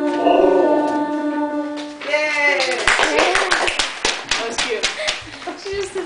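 A husky howling with her head raised, held on a long note with people singing along, ending about two seconds in. Then a couple of seconds of hand clapping.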